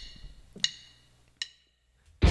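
Drumsticks clicked together in a count-in: sharp, ringing clicks at a steady beat about three quarters of a second apart, two of them a little past the half-second and near the one-and-a-half-second mark.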